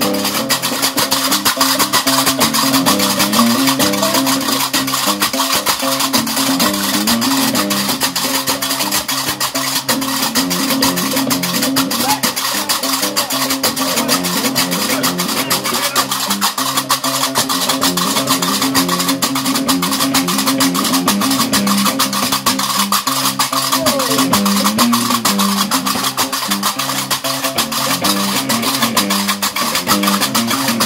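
Gnawa diwan music: a guembri, the three-string bass lute, plays a repeating low riff under a dense, fast, steady clatter of qarqabou iron castanets.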